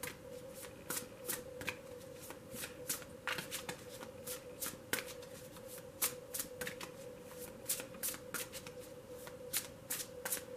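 A tarot deck being shuffled by hand: a run of short, irregular card slaps and riffles, about two or three a second.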